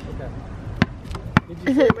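A child dribbling a basketball on asphalt: three sharp bounces about half a second apart, the middle one loudest.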